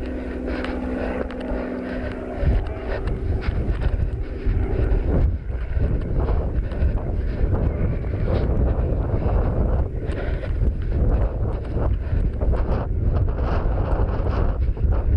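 Wind buffeting a head-mounted action camera's microphone, with a steady hum that stops about five seconds in. After that comes the jolting of running footsteps on rough grass.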